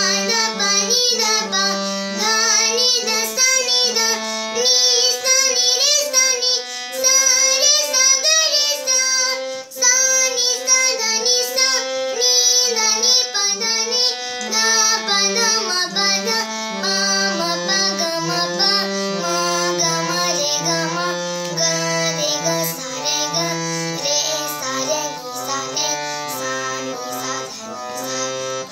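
A young girl singing while accompanying herself on a harmonium, the reed organ holding sustained notes that move in steps under her voice.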